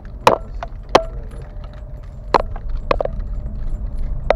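Sharp knocks and clunks from a car jolting over a rough lane, four of them at uneven intervals, each with a brief ring. A steady low rumble of the car running underneath.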